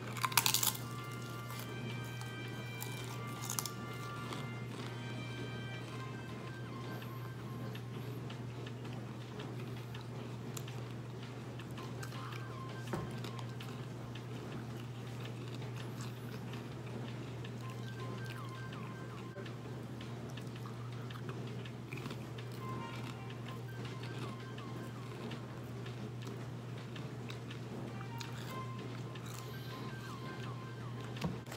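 A single crunchy bite into a wavy potato chip just after the start. After it, soft background music plays over a steady low hum.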